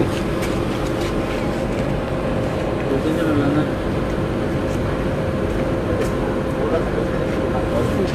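Steady background noise with a constant hum and faint voices in the background.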